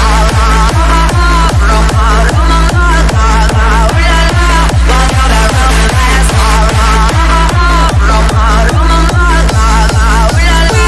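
Hands-up/hardstyle dance music: a hard kick drum on every beat, about two and a half beats a second, under a trilling synth lead melody.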